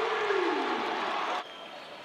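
Arena crowd cheering and shouting after a made three-pointer. It cuts off suddenly about one and a half seconds in, leaving faint gym background.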